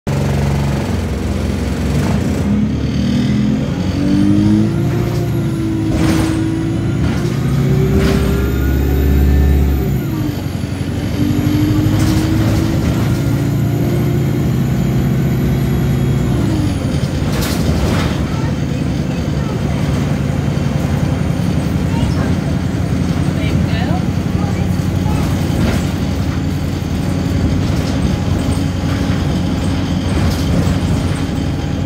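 On board an Alexander Dennis Enviro200 single-deck bus under way: its diesel engine climbs in pitch as the bus pulls away, drops back with a gear change about ten seconds in, then climbs again before settling to a steady cruise, with a faint high whine. A few knocks and rattles from the body come through over the engine.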